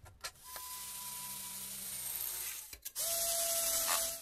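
Electric drill running in two bursts, a steady motor whine over a hiss, the second burst louder and at a lower pitch, and it stops abruptly.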